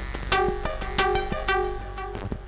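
Opera Rotas DIY synthesizer playing a sequenced pattern of short pitched notes with sharp attacks, several a second, the pitches shifting as the note knob is turned.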